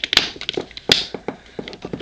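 Scattered sharp clicks and taps of a plastic action figure handled in the fingers as its ab-crunch torso joint is bent, one stronger click near the start and another about a second in.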